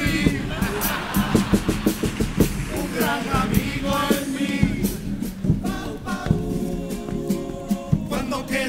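A Cádiz carnival chirigota group singing together over a steady drum beat, the voices coming in about three seconds in and holding long notes in the second half.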